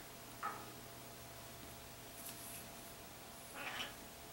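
Quiet room tone with two faint, short rustles, about half a second in and near the end, from beading thread being handled and drawn through beads.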